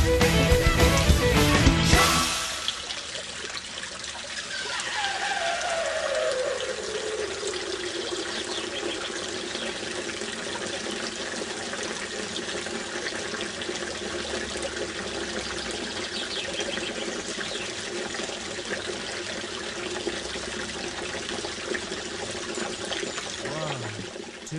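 Guitar music ends about two seconds in, and then steady running water continues. A tone slides down in pitch a few seconds after the music stops and then holds steady beneath the water.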